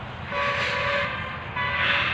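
A horn sounding in a long steady blast, then a second, shorter one.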